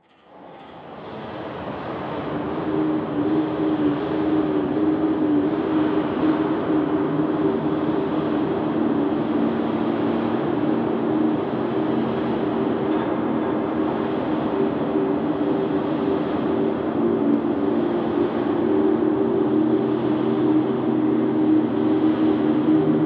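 Dark ambient drone fading in from silence over the first few seconds, then holding as a dense rumbling wash with several held low notes. A deeper note joins near the end.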